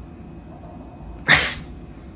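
A pet's single short cry about one and a half seconds in, over a quiet background.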